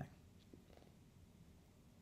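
Near silence: room tone with a faint low hum during a pause in speech.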